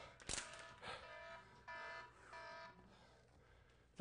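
Faint electronic workout-timer beeps: a few short, steady-pitched beeps, the longer two about two seconds in, marking the end of a timed set. A sharp click comes just before the first beep.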